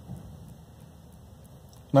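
Quiet, steady background hiss of a parked vehicle's cab, with a man's voice starting right at the end.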